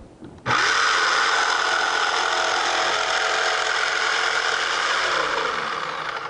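Electric jigsaw starting up about half a second in and cutting a board along an interior cutout, its reciprocating blade buzzing steadily. Near the end the trigger is released and the motor winds down to a stop, the blade left to halt in the cut before the saw is lifted.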